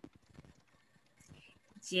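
Mostly a pause filled with faint, scattered small clicks, then a woman's voice starts answering near the end.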